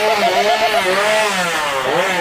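Petrol chainsaw engine revving, its pitch wavering up and down without settling.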